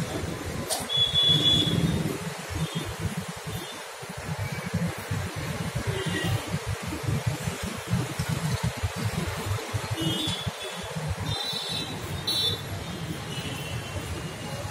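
Street traffic background: a low, uneven rumble with several short, high-pitched toots, mostly about ten to twelve seconds in.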